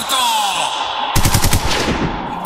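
Machine-gun fire sound effect: a rapid run of shots starting about a second in and lasting under a second, after a falling tone. It is played as a drop for the goal of the 'pistolero' striker.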